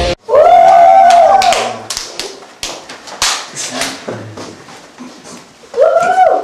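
A boy's loud, long shout, followed by a run of sharp claps and slaps over a few seconds, with another short shout near the end.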